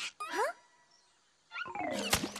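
Cartoon sound effects: a short yelp-like sound with sliding pitch, then a second of near quiet, then a loud falling-pitch effect starting about a second and a half in as a character slips down into mud.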